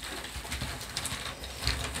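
A hand rummaging inside a cloth bag of word-game pieces: soft rustling and handling with a few faint small clicks.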